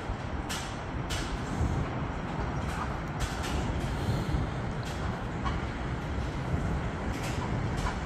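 Steady low rumble of city traffic heard from high above, with several brief crackles scattered through it.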